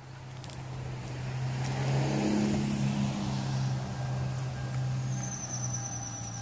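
An SUV's engine idling, a steady low hum that grows louder over the first two seconds and then holds.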